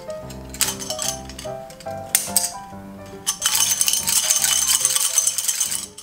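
Stacks of plastic and metal bangles on both wrists clattering against each other, a dense jangling rattle that is loudest from about three seconds in until just before the end. Background music with a light melody plays throughout.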